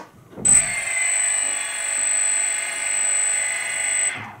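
The DJI Phantom's brushless motors spinning with no propellers fitted: a steady, high-pitched whine of several tones that starts abruptly about half a second in and cuts off at the end.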